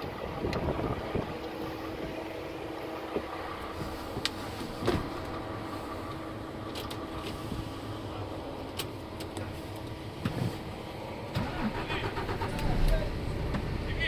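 Diesel engine of a DAF XF 460 tractor unit, a PACCAR MX-13 straight-six, idling steadily. Scattered clicks and knocks sound over it, with a louder low rumble near the end.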